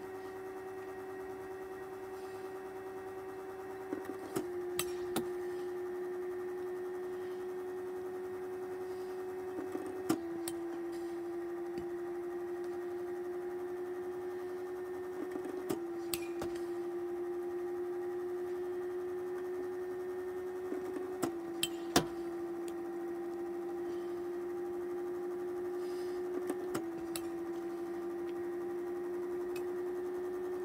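Small pitching machine's motor humming steadily, its pitch dropping each time a ball is fed through and then slowly climbing back, five times about five and a half seconds apart. Each pitch is followed within a second by the sharp hit of a metal bat on the ball, the loudest a little past the middle.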